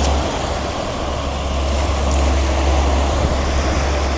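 Wind on the microphone: a steady low rumble under an even hiss of outdoor noise.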